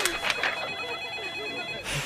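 An electronic telephone ringtone: several high steady tones held together, stopping near the end, with faint voices murmuring underneath.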